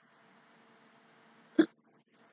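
Faint steady room hum, then about one and a half seconds in a single short, sudden burst of voice from a woman: the first stifled note of a laugh.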